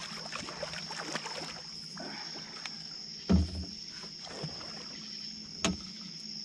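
Knocks and handling sounds on a metal boat as an angler works at the gunwale, with one heavy thump a little past halfway and a sharp click near the end. A steady high insect trill runs underneath.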